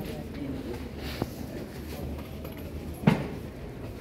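Market background: a steady murmur of distant voices and bustle, with a faint click a little past one second and a short, louder thump about three seconds in.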